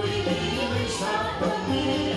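Live pop song: female vocals sung into microphones over a backing band with keyboard, amplified through a PA.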